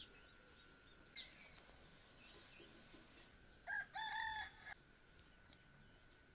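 A rooster crows once, a short call about four seconds in, over faint chirping of small birds.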